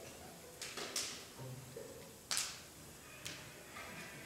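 A plastic water bottle being handled and set down: a few sharp clicks and crinkles, the loudest a little past halfway.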